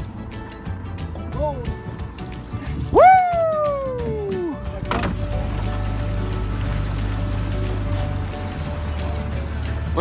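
Background music over an outboard boat motor running steadily in the second half. About three seconds in, a loud whoop rises sharply and slides down over about a second and a half; a shorter falling whoop comes just before it.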